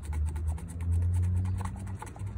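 A metal scratcher rubbing the scratch-off coating from an instant lottery ticket: a rapid run of short rasping strokes, about ten a second, over a low steady hum.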